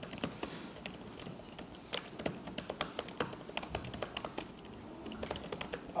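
Typing on a computer keyboard: a quick, irregular run of keystroke clicks as a line of code is entered.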